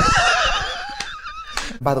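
Hearty laughter from two people, one of them with a high-pitched, wavering, squealing laugh that trails off over about a second and a half.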